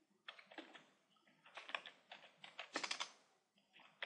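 Faint typing on a computer keyboard, in three short runs of keystrokes.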